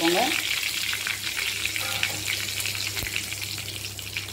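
Hot oil sizzling and crackling in a kadai as curry leaves fry, a powder being shaken into the oil at the start. The sizzle eases slightly toward the end.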